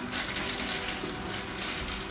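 Faint handling and rustling of food at a kitchen counter as carrots are added to a salad.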